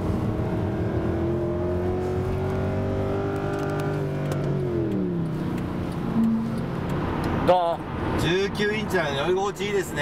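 Mercedes-Benz C63 AMG's 6.3-litre V8 under hard acceleration, its note climbing steadily for about four seconds, then falling sharply and holding lower. A man starts talking over it near the end.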